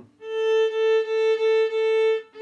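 Violin bowed on a single steady A note in about five short, even strokes, the tone clear and full with a brief dip at each bow change.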